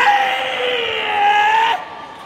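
Karate kiai: one long shout held for nearly two seconds, its pitch sagging slightly before it cuts off sharply.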